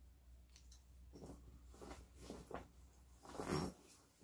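Soft rustling of cloth being folded and pushed into a duffel bag, in a few short bouts, loudest near the end.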